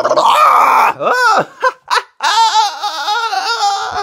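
A man's voice in a loud theatrical outburst: a harsh shout in the first second, a few short falling cries, then a long wavering laugh that ends abruptly.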